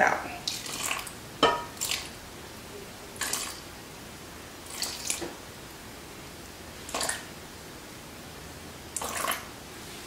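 Water dribbled from a glass jar into a mixing bowl of flour in short, separate splashes every second or two, as it is topped up to a measured weight on a scale.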